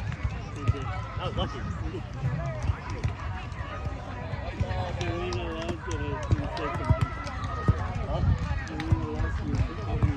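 Voices of players and people around the field talking and calling, not close enough to make out, over a low rumble, with a few sharp knocks.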